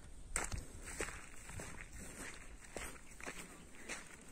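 Footsteps walking through dry grass over rocky ground, crunching and swishing at about two steps a second.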